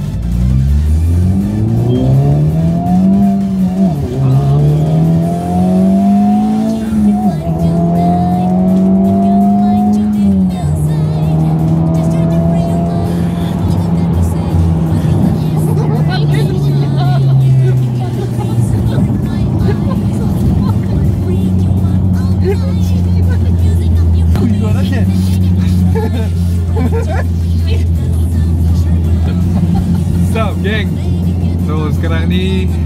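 Honda Civic Type R FL5's turbocharged four-cylinder engine heard from inside the cabin, accelerating hard. The revs climb and drop sharply at upshifts about four, seven and ten seconds in, then hold at a steady cruise and ease off to a lower steady drone.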